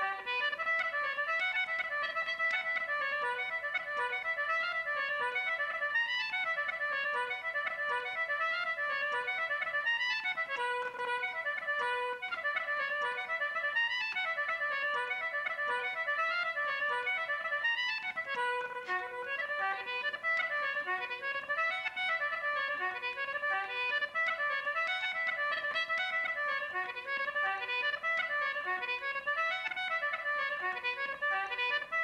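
Concertina playing a fast Irish traditional tune: an unbroken stream of quick, reedy notes.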